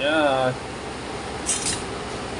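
A woman's voice for the first half second, then a steady low hiss. About a second and a half in, a brief sharp sizzle is heard as cooking fat goes into a hot wok.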